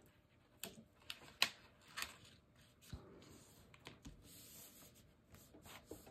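Quiet handling of card and paper: a few light clicks and taps, the loudest about a second and a half in, then a faint soft rustle as the folio is pressed and shifted.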